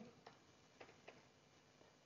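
Faint computer keyboard keystrokes, about four separate clicks, over near-silent room tone.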